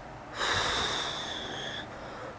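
A woman imitating Darth Vader's respirator breathing: one long breath beginning about half a second in and lasting over a second.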